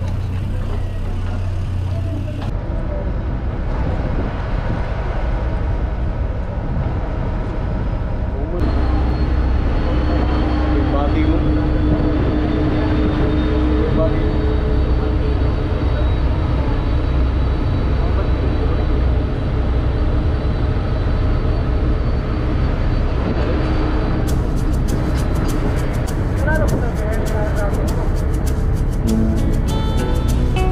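Steady low drone of a passenger-vehicle ferry's engines heard on deck, with indistinct voices in the background. The sound changes abruptly about two and a half and eight and a half seconds in, and is louder after the second change.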